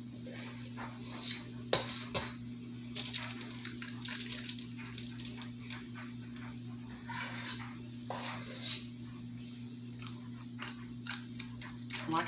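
Metal cookie scoop scraping and clicking against a stainless steel mixing bowl as dough is scooped out, with irregular clicks of the scoop's spring-release lever and soft taps as dough is set on a parchment-lined baking sheet. A steady low hum runs underneath.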